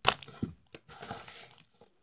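A sharp click, then a few faint, scattered clicks and short rustles of packaging being handled as a padded paper mailer envelope is picked up.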